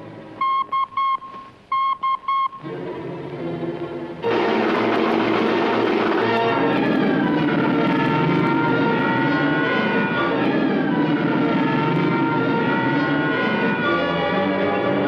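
A police-style whistle blown in two quick sets of three short, shrill toots. About four seconds in, loud orchestral music starts, with an alarm siren wailing up and down through it.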